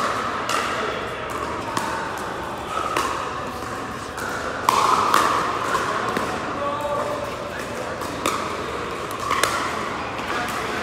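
Pickleball paddles popping against hollow plastic balls, scattered hits a second or so apart with the loudest about five seconds in, echoing in a large hall over a background of voices.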